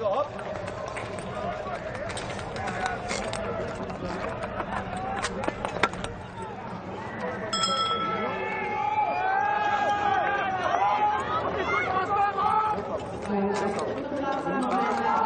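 Spectators shouting and cheering the skaters on, getting louder from about eight seconds in. A bell rings briefly about seven and a half seconds in, which fits the bell for the final lap.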